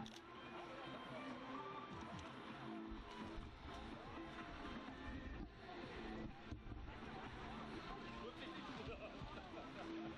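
Faint, indistinct chatter of a small group of people standing together outdoors. A low rumble rises under it in the middle seconds.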